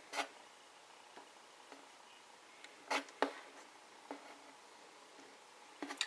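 A quiet room with a few soft, short clicks: a finger tapping the touchscreen of an HTC One (M8). There is one tap at the start, two close together about three seconds in and a fainter one a second later.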